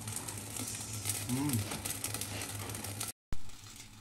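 Sliced meat sizzling and crackling on a round yakiniku grill plate, with a short hummed voice about halfway through. The sound cuts out abruptly a little after three seconds, then comes back suddenly.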